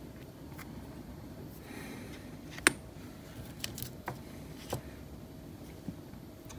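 Scattered small metallic clicks and taps from a Tesa T60 dimple lock cylinder being handled as its plug is slid out of the housing, with one sharper click about two and a half seconds in.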